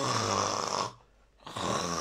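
A man imitating snoring: two snores, each about a second long, with a short pause between them.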